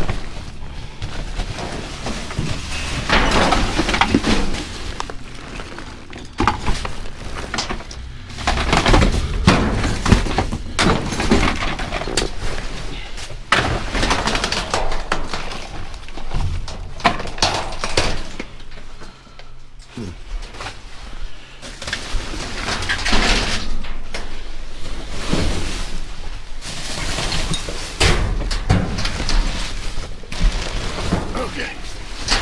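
Trash being rummaged through inside a steel dumpster: plastic bags and paper rustling and crinkling in irregular spells, with knocks and clinks as items, some of them glass, are shifted.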